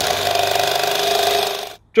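Cordless drill with a spade bit boring into a timber beam, its motor running steadily, then stopping abruptly shortly before the end.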